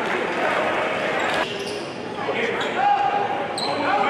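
Basketball game sound in a large, echoing gym: many crowd and player voices overlapping, with a basketball bouncing on the hardwood court.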